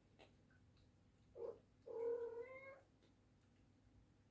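A cat meowing twice: a short meow, then a longer one that rises slightly in pitch.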